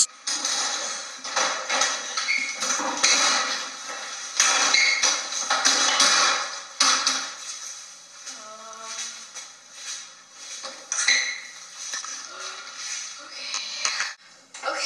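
Belt buckle jingling and clothes rustling as trousers are yanked on in a hurry, with irregular clattering knocks throughout. A brief vocal sound comes about halfway through.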